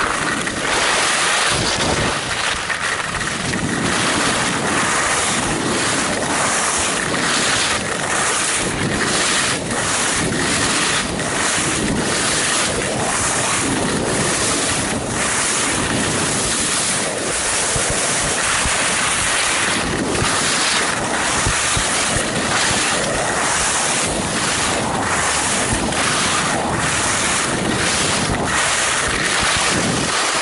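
Wind buffeting the microphone with the steady hiss and scrape of carving on packed snow during a fast downhill run, loud throughout with many short flutters.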